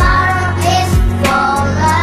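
Song with a young girl singing over a backing track with sustained bass and a bass drum thump about a second in.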